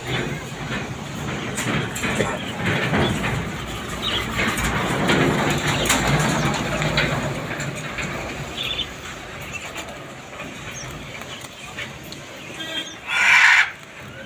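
Many caged small birds chirping over a steady low background rumble. A loud, harsh squawk comes near the end.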